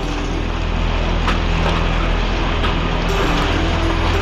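Dramatic news intro music: sustained low notes shifting about once a second under a fast, mechanical ticking texture.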